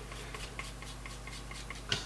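A palette knife stirring acrylic paint into glazing medium on a plastic palette: faint, quick, irregular scrapes and taps, over a steady low hum.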